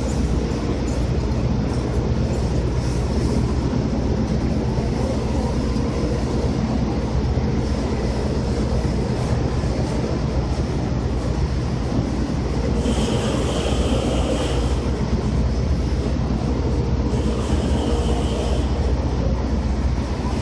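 Heavy machinery running with a steady low rumble and hum. A higher whine comes in briefly twice in the second half.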